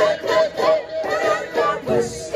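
Live reggae-dancehall music played loud through a festival PA: sung vocals over a thin backing with no bass or drums.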